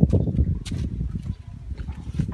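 Rumbling, rustling and knocking as a person climbs into a car's back seat, with the close microphone jostled; a few sharp clicks in the first second or so, then quieter.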